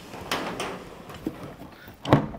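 Plastic latches clicking and the hard plastic water tank of a Milwaukee M18 Switch Tank backpack sprayer rubbing as it is unlatched and worked loose from its battery base. There is a sharp click just after the start and a lighter one past halfway, with handling noise between.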